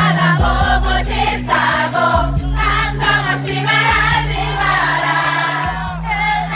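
Live pop song over a concert PA: singing over a band backing track with a bass line that changes note every second or two.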